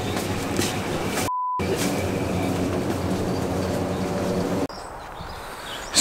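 A steady low rumbling hum, broken about a second in by a short, pure high beep, an edited-in censor bleep that blanks out all other sound while it lasts. Near the end the hum cuts off to a quieter outdoor background.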